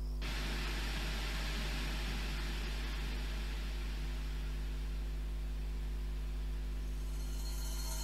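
Steady hiss of a television showing static, over a low electrical hum; the hiss thins out near the end.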